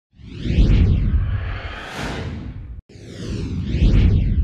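Two whooshing transition sound effects with a deep low rumble. Each swells and fades, with a brief cut just under three seconds in between them.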